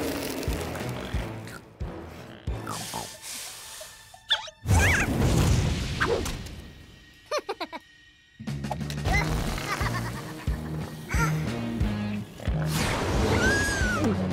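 Cartoon soundtrack of music and sound effects, with a sudden loud hit about four and a half seconds in. From about eight seconds on, music with a steady beat.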